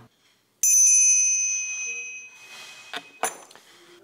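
Small brass hand bell rung once, a bright, high ring that fades out over about two seconds, with two brief, faint clinks of the clapper about three seconds in.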